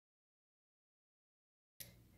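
Silence, the sound track muted, broken near the end by one faint click as the sound comes back.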